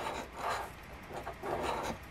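A large round coin scraping the scratch-off coating from a paper lottery ticket, in rasping strokes that swell twice.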